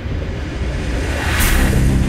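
Logo-animation sound design: a deep, steady rumble with a sharp whoosh about a second and a half in, after which dark sustained music tones come in near the end.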